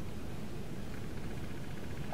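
Steady low room noise, a low rumble with no distinct events.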